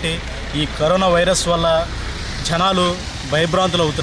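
A man talking into a handheld microphone, with a steady low rumble underneath, like a vehicle engine running.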